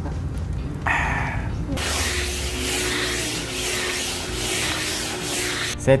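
Small cordless handheld vacuum cleaner running: a steady hiss with a faint hum underneath, from about two seconds in until it stops just before the end.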